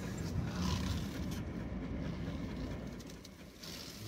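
Low steady rumble of a car's engine and tyres heard from inside the cabin as the car pulls out and turns at low speed, with a dog panting in the car.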